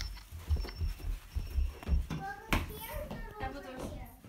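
Small children's footsteps in wellington boots on carpet, a quick run of thuds, then a child's voice and one sharp knock about two and a half seconds in.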